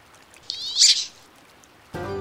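A wood duck's single high, squealing call, about half a second long, over faint running water.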